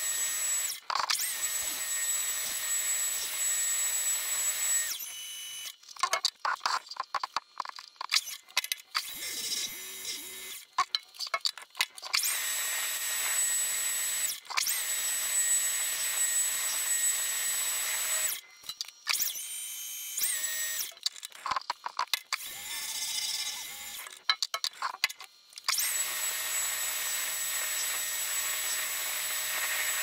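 A Precision Matthews 1440TL metal lathe spinning and turning aluminum bar stock, running with a steady high-pitched whine as it cuts. The running sound stops and starts several times, with short stretches of rapid clicks and rattles in between.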